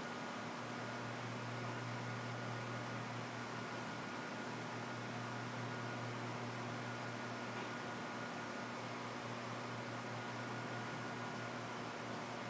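Room tone: a steady background hiss with a low, unchanging hum and nothing else happening.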